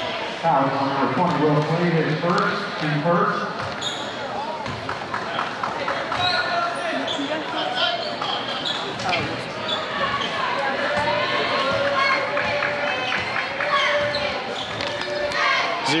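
Gymnasium crowd voices and chatter echoing in a large hall, with a basketball bouncing on the hardwood floor as a player readies a free throw.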